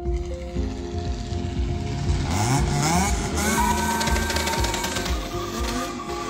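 Background music, with a car engine revving up about two seconds in.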